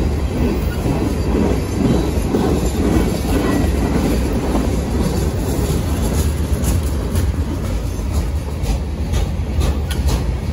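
Slow freight train rolling past close by: a steady low rumble of the cars on the rails. In the second half it is joined by a run of sharp clicks and rattles from the wheels and couplings.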